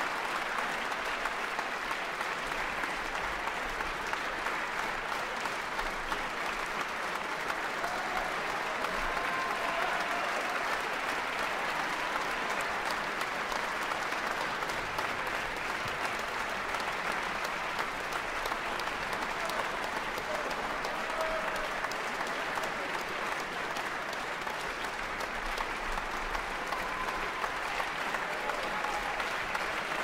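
Concert-hall audience applauding steadily, a dense even clapping that holds at one level, with a few brief voices heard over it.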